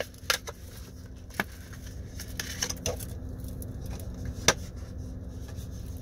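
Chocolate bar packaging being opened by hand, cardboard box then foil wrapper: scattered rustles and small sharp clicks, the sharpest about four and a half seconds in, over a low steady hum.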